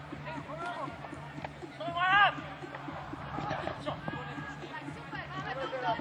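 Distant voices and scattered chatter from people around a playing field, with one louder call about two seconds in.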